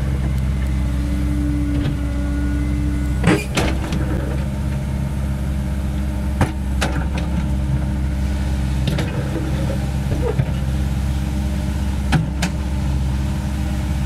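Diesel engine of a CAT 307E2 mini excavator running steadily as it digs, with several sharp knocks and clanks along the way.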